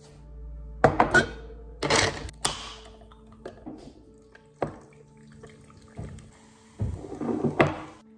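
A Red Bull can is set down on a stone counter and cracked open, then poured over ice in a glass mason jar, with several sharp knocks of can and jar against the counter. Soft background music plays underneath.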